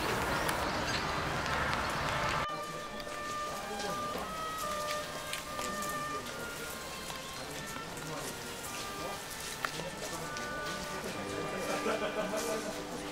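A steady hiss of rain for the first two seconds or so, which cuts off suddenly. It gives way to quieter outdoor ambience, with faint voices and short held musical notes at several pitches.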